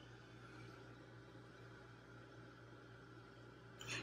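Near silence: faint steady hiss and low hum of room tone.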